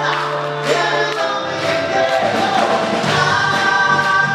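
A symphony orchestra with a band playing live pop-rock, long held chords over a sustained low note that changes about a second and a half in, with a male singer's voice.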